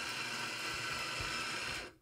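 Izzo Vivi heat-exchanger espresso machine's pump running steadily as an espresso shot is pulled, then shutting off suddenly near the end as the shot finishes.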